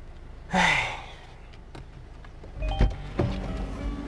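A man's breathy sigh, then the clicks and low thunks of a car's driver door being unlatched and opened. Soft background music comes in a little past halfway.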